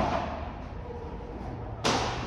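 Padel ball struck by rackets twice in a rally, a sharp pop right at the start and another near the end, each ringing on in the covered hall's echo.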